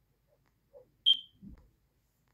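A single short high-pitched electronic beep, with a click at its onset, about a second in. A soft low thump follows.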